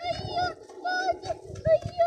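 A bird calling close by: the same short, arched note repeated about twice a second.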